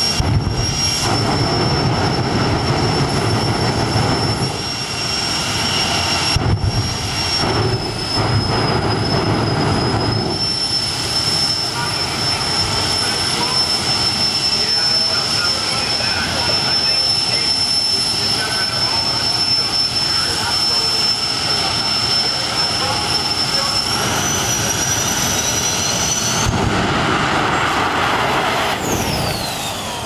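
Jet dragster's turbine engine running with a steady high whine, its pitch stepping up about three-quarters of the way through; a few seconds later a louder rush as the car launches, and near the end the whine sweeps down in pitch as it passes.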